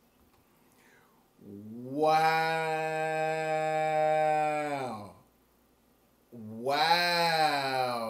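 A man's voice drawn out in a long, steady "ooh" of amazement, lasting about three and a half seconds. A second, shorter one that bends in pitch follows near the end.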